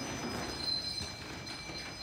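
Faint rustling and handling noise from hands working inside a large plastic drum, over a thin, steady high-pitched whine.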